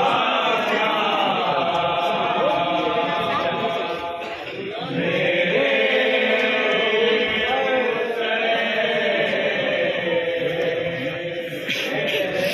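A group of men chanting a noha, a Shia lament for Hussain, together in long held lines, with a brief dip about four seconds in.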